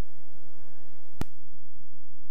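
A single sharp click a little over a second in, over a low steady hiss.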